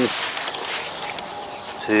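Footsteps on grass scattered with dry leaves, a soft steady rustle with a few faint ticks.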